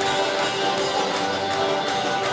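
Live band playing, with strummed guitars over a drum kit keeping an even beat of about four strokes a second.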